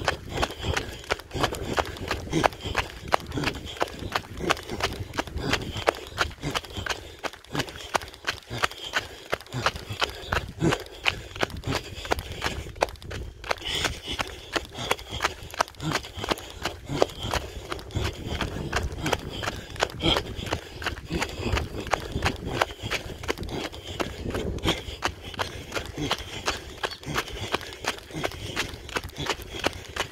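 A runner's sandals striking a dirt road in a quick, even rhythm of about three footfalls a second.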